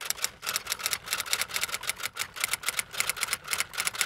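Rapid, irregular typewriter key clicks, several to about ten a second, used as a typing sound effect over a title card.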